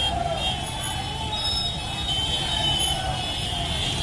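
Dozens of motorcycles riding slowly past together, their small engines merging into one steady low drone, with faint held high notes above it.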